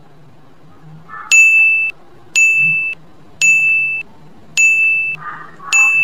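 Countdown timer sound effect: five short, identical electronic beeps, about one a second, each a steady high tone that starts sharply and cuts off after about half a second.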